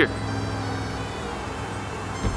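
A steady low mechanical hum, with a faint steady tone over it that stops about a second in.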